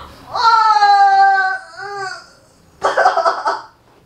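A woman crying out in pain under a hard leg massage: one long, high wail of about a second, a short second cry, then a harsh, rasping outburst near the end.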